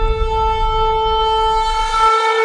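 A long, steady horn blast on a single held note over a deep rumble; the rumble cuts off near the end.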